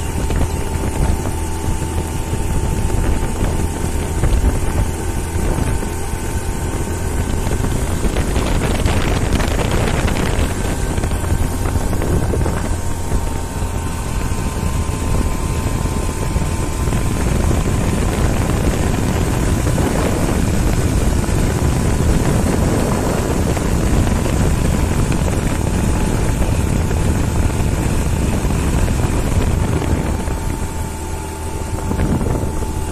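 Wind rushing over the microphone of a moving open vehicle, over the steady drone of its engine with a faint whine.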